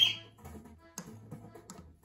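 A cockatiel tapping on the floor of its cage, giving scattered sharp clicks, over music with steady low notes. A short rising chirp, likely from the cockatiel, is the loudest sound, right at the start.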